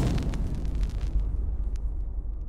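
Tail of a logo-reveal sound effect: a low rumble slowly dying away, with scattered small crackles as the sparks fade.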